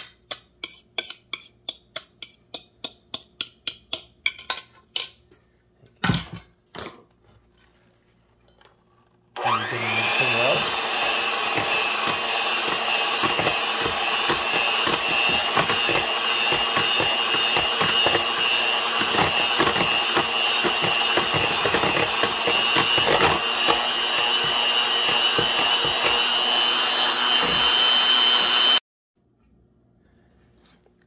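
Electric hand mixer beating mashed banana into a butter and egg mixture in a stainless steel bowl: it starts about nine seconds in, quickly comes up to speed, runs steadily with a constant high whine for about twenty seconds, and cuts off suddenly near the end. Before it, a quick, even run of light taps of a utensil against the metal bowl, about four a second, then two louder knocks.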